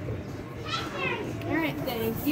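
Children's high-pitched voices, two short calls about a second in and near the end, over steady background noise.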